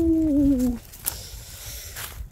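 A voice holding one long drawn-out "boom", slowly falling in pitch and wavering before it stops just under a second in.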